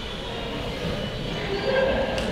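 Large indoor hall ambience: a steady low rumble with faint, distant voices.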